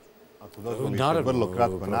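A man speaking, starting about half a second in, over a faint steady hum.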